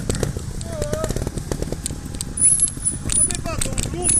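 Trials motorcycle engine idling, with a steady low rumble and a rapid, irregular ticking.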